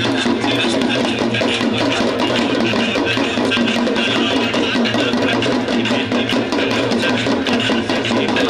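Devotional Ganga Aarti music playing loudly and without a break, with rapid percussion strikes over a steady low tone.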